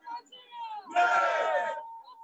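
Protesters shouting a chant, with one loud shouted burst about a second in.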